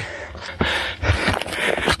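A man breathing hard, a few heavy breaths in and out, from the effort of climbing a steep trail on foot. A low rumble runs underneath.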